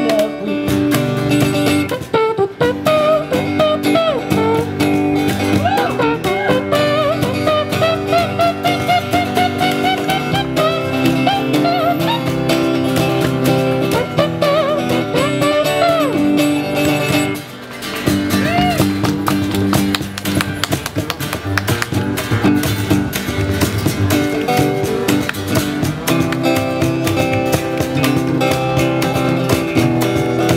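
Small acoustic band playing an instrumental break: strummed acoustic guitars, upright bass and cajon, with a lead melody that slides in pitch through the first half. The music drops out briefly just past halfway, then comes back in.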